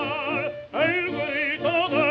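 Operatic baritone singing with a wide vibrato on an old 1927 recording that has no high treble. About two-thirds of a second in the tone briefly breaks off, then a new note scoops upward.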